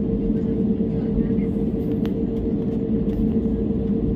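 Cabin noise of an IndiGo Airbus A320-family jet taxiing: a steady engine and air-system drone with a constant hum over a low rumble. A single short click about two seconds in.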